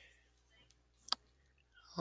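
A single sharp click about halfway through, against near silence, with a fainter tick shortly before it.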